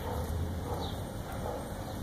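Faint soft sounds from a Labrador Retriever–shepherd mix dog lying contentedly while its belly is rubbed: a few short, quiet noises over a steady low rumble.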